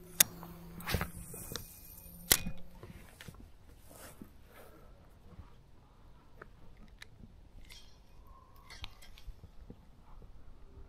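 Spinning rod and reel being handled: three sharp clicks in the first two and a half seconds, then only faint scattered ticks.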